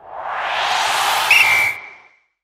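A transition sound effect for an animated title graphic. A rushing whoosh swells up, and a short high whistle tone cuts in just past the middle, holding until both fade out at the end.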